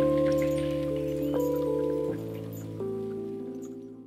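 Outro music: soft held chords that change a few times and fade toward the end.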